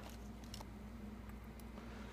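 Quiet low, steady electrical hum, with a faint tick or two of handling about halfway through.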